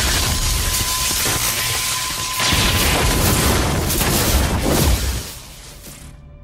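Electric lightning-bolt sound effects: loud crackling and zapping with booms that drop away sharply about five seconds in.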